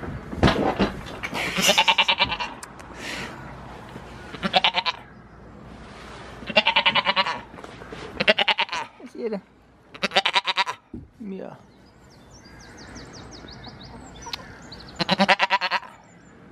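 Goats bleating up close: about seven separate bleats, each lasting half a second to a second, with short gaps between them.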